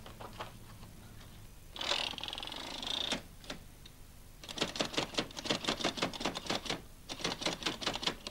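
Braille writer being typed on by hand. A few scattered key clicks come first, then a brief whirring rasp about two seconds in. From about halfway there is a fast, steady run of key strokes with a short break near the end.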